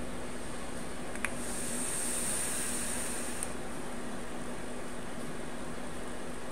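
Steady electric fan noise, with a light click and then a high hiss for about two seconds as air is drawn through a vape's rebuildable dripping atomizer while its coil fires at 78 watts.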